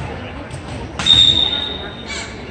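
Volleyball referee's whistle: one steady, high-pitched blast starting about a second in and lasting about a second, the signal for the server to serve, over the murmur of spectators in the gym.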